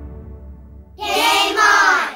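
Background music fading away, then about a second in a child's voice, sung or called out, in two drawn-out syllables.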